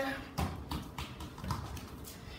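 A few dull knocks in the first second and a half, a football bumping on a tiled floor as it is set down and handled.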